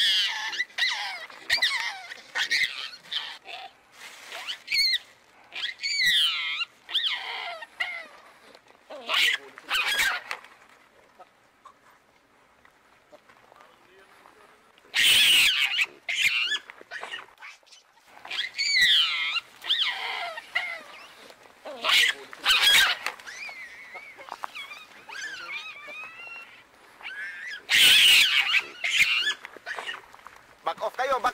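Hamadryas baboons screaming again and again, high-pitched calls that slide down in pitch, with a few harsher, louder bursts about halfway through and near the end: the screams of baboons fighting over food.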